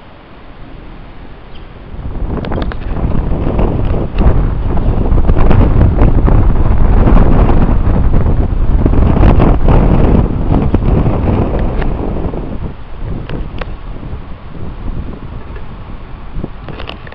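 Wind buffeting the camera microphone: loud gusty noise, heaviest in the low end, that swells about two seconds in and eases off after about twelve seconds.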